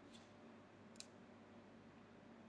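Near silence: faint room tone with one short click about halfway through, and a fainter click just after the start.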